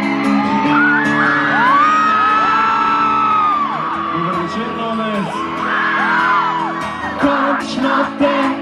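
Live rock band playing loudly through the PA, with guitars and drums, and whoops and shouts from the crowd over it. Sharp drum hits stand out near the end.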